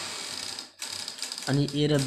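Pen scratching on paper while a short figure is written, stopping before the first second is out; a voice begins speaking after that.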